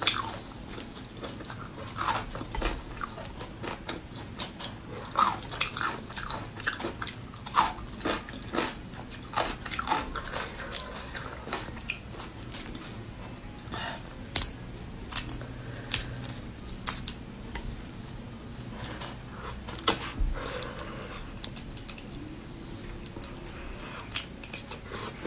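Raw marinated shrimp being peeled by hand and eaten: irregular sharp crackles of shell breaking, with chewing.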